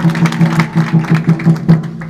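A group of people clapping in a fast, even rhythm, about four claps a second, over a low steady hum that pulses in time with the claps.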